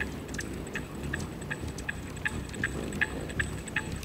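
Hovering hummingbirds: a steady low hum of wingbeats with a run of short high ticks, about three or four a second.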